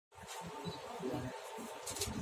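A faint steady buzz over low, indistinct room murmur.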